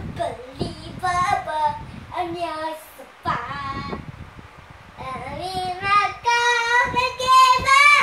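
A young boy singing on his own with no accompaniment, in short phrases broken by pauses, ending in long held notes that waver in pitch.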